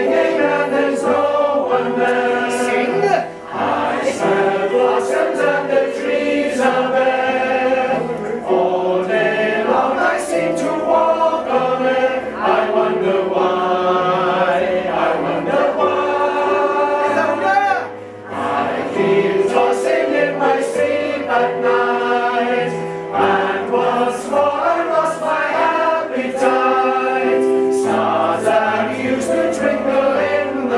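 Male voice choir singing in full, loud and sustained, with two brief breaks between phrases, about three seconds in and again about eighteen seconds in.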